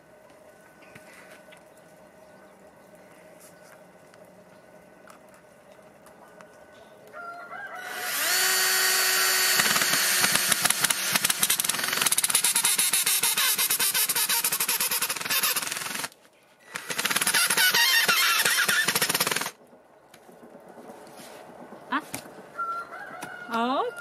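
Cordless drill driving a wood screw into the wooden handle and foot of a home-made soil tamper. It runs loudly for about eight seconds from about eight seconds in, stops briefly, then runs about two and a half seconds more as the screw is driven home.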